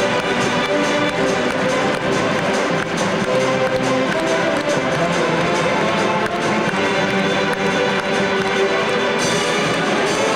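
A Mummers string band playing a tune live, many instruments together with a steady beat.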